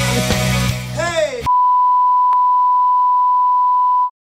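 Loud rock music with guitar that ends in a quick downward swoop about a second and a half in. It gives way to a loud, steady electronic beep on one high pitch, held for about two and a half seconds until it cuts off.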